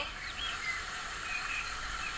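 Birds chirping in short calls over a steady outdoor hiss, a nature-ambience sound effect.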